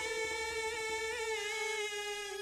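A singer with an amplified microphone holding one long sustained note that wavers slightly and sags a little in pitch near the end, over a sparse band backing.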